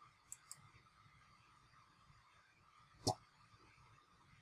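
Computer mouse clicking: two faint clicks just after the start and a single louder click about three seconds in, over quiet room tone.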